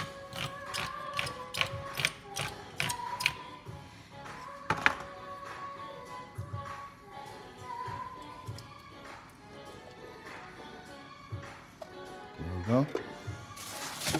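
Handheld manual can opener being cranked around the rim of a can, a quick run of clicks at about three a second for the first three seconds or so, with music playing in the background.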